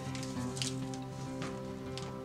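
Background music holding steady, sustained notes, with a couple of brief rustles of paper being handled and slid into a cover.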